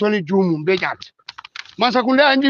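Speech, broken about a second in by a pause that holds a few short clicks.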